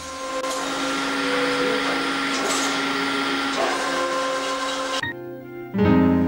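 A loud, steady machine-like whirring noise over background music. Both cut out suddenly about five seconds in, and the music comes back louder just before the end.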